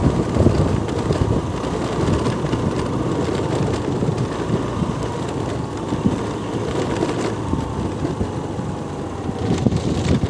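A vehicle travelling along a rough dirt road: a steady low rumble with wind buffeting the microphone, and a faint steady whine that sinks slightly in pitch.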